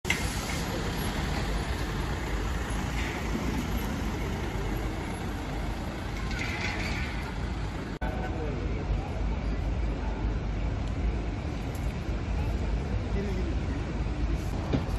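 Street ambience: steady traffic noise with faint voices of people standing around, broken by a sudden momentary drop about eight seconds in.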